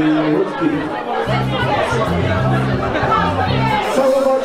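A wedding dance band playing, with steady held low notes, under the loud chatter of a crowd of guests.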